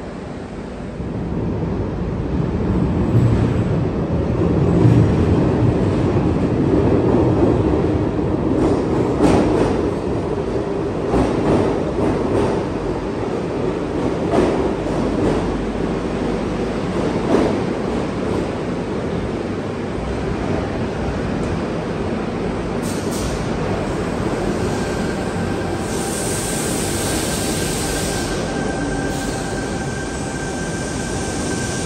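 A Sydney Trains Tangara double-deck electric train pulling into an underground station platform. Its rumble builds quickly and is loudest a few seconds in, then settles as the train slows. A steady high tone joins in over the last few seconds.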